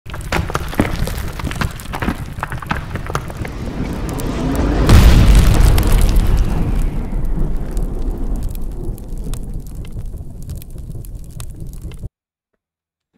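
Cinematic intro sound effects: crackling builds to a deep boom about five seconds in, then a long rumbling fade with scattered crackles.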